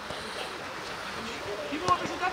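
Outdoor football pitch: faint shouting voices of players across the field over a steady background haze, with a single sharp kick of the ball near the end.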